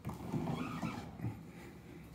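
Handling noise: rustling and shuffling with a soft knock about a second and a quarter in, fading off after that.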